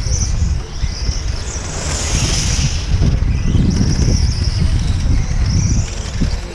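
Wind buffeting the microphone, over the high whine of 1/8-scale on-road RC car engines circling the track, their pitch rising and falling as they accelerate and brake.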